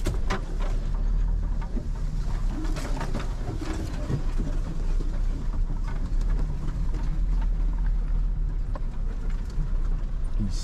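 Inside the cab of a Toyota Hilux ute crawling down a rough, steep bush track: a steady low engine and drivetrain rumble, with scattered knocks and rattles as the truck rolls over bumps.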